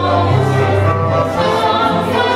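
Folk dance music with several voices singing together over a steady bass line.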